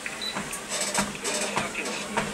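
Fitnord treadmill running: a steady motor and belt hum with regular footfalls on the belt, as the programme takes the speed up to 6 km/h.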